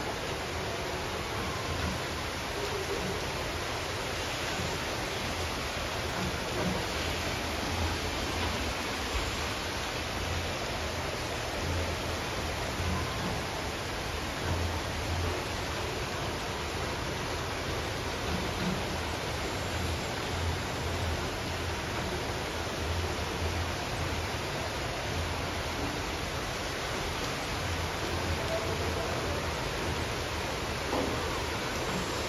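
Steady heavy rain falling outside, a continuous even hiss.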